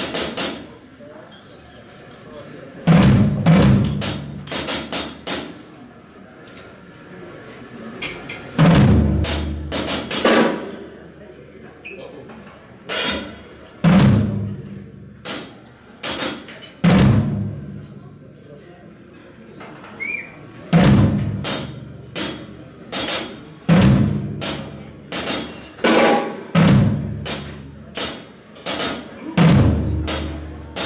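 Drum kit played alone in short funk phrases of snare, tom and bass-drum hits with cymbal crashes. Each phrase is followed by a gap of a second or two, so a new burst comes roughly every three to four seconds.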